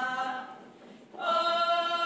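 Unaccompanied women's voices singing a Slovak folk song in the Horehronie style. A long held note ends about half a second in, there is a short breath pause, and the next long note begins just after a second, a little higher.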